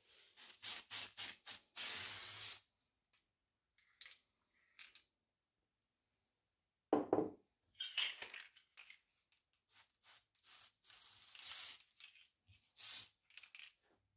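Aerosol spray-paint can being sprayed onto thin wooden model strips in a series of short hissing bursts, one longer burst about two seconds in, and more bursts in the second half. About seven seconds in there is a single louder thump.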